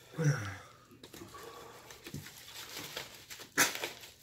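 A man gives a short groan falling in pitch just after the start, and about three and a half seconds in a sharp, loud burst of breath: reactions to the burn of a super-hot pepper chip.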